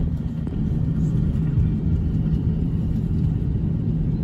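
Steady low rumble inside the cabin of a jet airliner taxiing after landing, with a constant low hum running through it.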